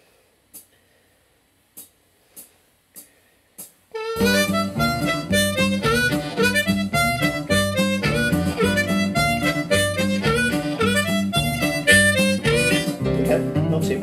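A few sharp clicks, then about four seconds in a blues backing track starts, slowed to 86% speed. A diatonic blues harmonica plays licks along with it, with bent notes, to the end.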